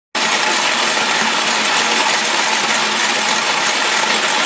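Motorised Corona hand grain mill, turned by an old 18 V cordless drill motor run from a 12 V supply in low gear, grinding grain with a loud, steady mechanical grinding noise.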